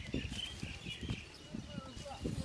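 Birds chirping faintly in the background, with a few soft low knocks scattered through.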